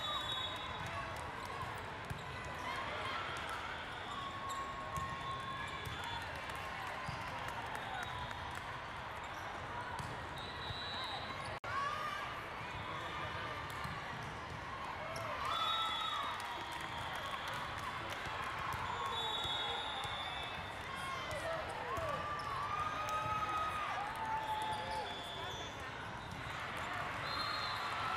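Volleyballs being struck and bouncing against a steady din of indistinct voices and shouts in a large, echoing sports hall, with a few short high whistle blasts now and then.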